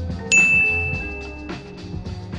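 A single bright notification ding, a sound effect for a new item popping up on the page, that starts suddenly and rings for about a second over background music with a steady beat.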